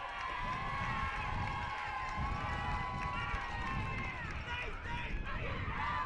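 Faint open-air stadium ambience at a football game: many distant voices from the stands and the field overlap, with a low background rumble.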